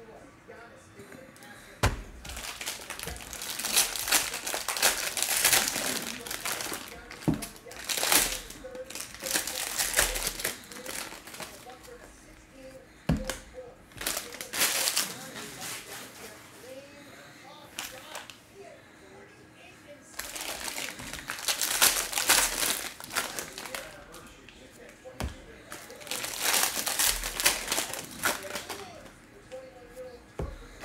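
Foil-and-plastic trading card pack wrappers being torn open and crinkled by hand, in about five bursts of a few seconds each with quieter gaps between, plus a few short sharp knocks.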